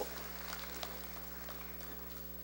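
Quiet room tone with a steady low electrical hum and a few faint clicks.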